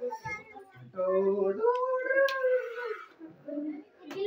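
A child's voice making one long drawn-out call that rises slightly and falls back, held for about two seconds, with brief voice sounds around it.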